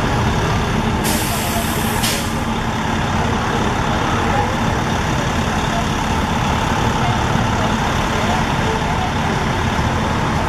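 Steady street traffic with heavy vehicles running. About a second in, a sharp hiss of air lasts about a second.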